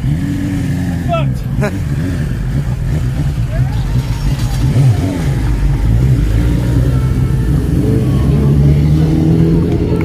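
Racing motorcycle engines running at low revs, a steady low rumble with a slight rise and fall in pitch, with voices faintly in the background.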